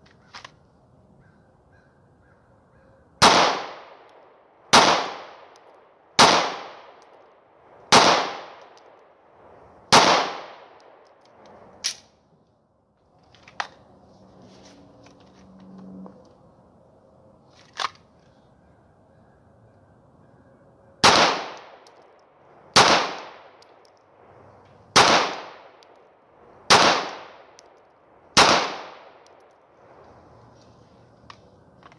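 Two strings of five 9mm pistol shots fired at a measured pace, about one every 1.5 to 2 seconds, one string from a Ruger MAX-9 micro-compact and one from a full-size pistol, each shot loud and sharp with a ringing decay. Between the strings come a few light clicks and knocks as one pistol is put away and the other is drawn.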